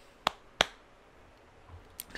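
Two short, sharp clicks about a third of a second apart, over quiet room tone.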